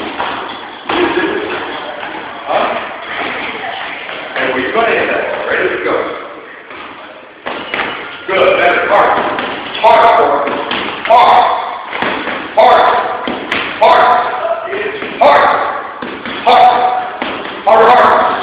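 Fists striking a heavy hanging punching bag: irregular thuds at first, then a regular hit about every second and a quarter from about eight seconds in. A voice calls out with the strikes.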